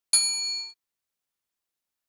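A single bright bell ding from a notification-bell sound effect. It rings a few clear tones at once and fades, then cuts off in well under a second.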